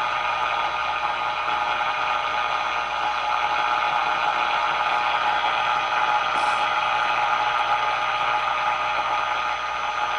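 Tube AM radio's speaker giving a steady hiss of static with the signal generator's modulated 455 kc test signal heard as a tone in it, while an IF coil is tuned for peak. The RF gain is turned well down so the weak signal does not bring on the AVC, leaving a noisy signal.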